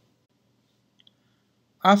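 Near silence with one faint short click about halfway through, then a man's voice starts speaking near the end.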